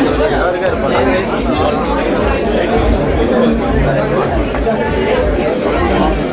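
Crowd chatter: many voices talking over one another in a crowded room, at a steady level with no single voice standing out.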